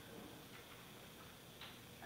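Near silence: room tone in a council chamber, with a few faint ticks, the clearest shortly before the end.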